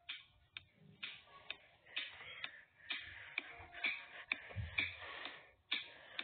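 Small bare oval speaker driver from a Cyber Acoustics TV speaker playing a thin, faint beat: sharp ticks about twice a second with hissy bursts between them.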